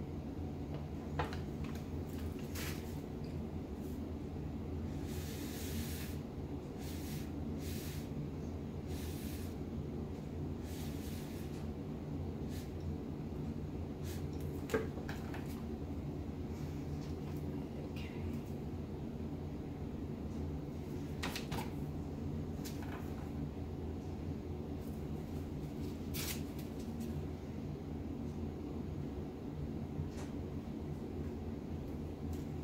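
Paper towel rustling and brushing in short scattered bursts as it is wiped around the rim of a freshly poured acrylic painting, over a steady low hum.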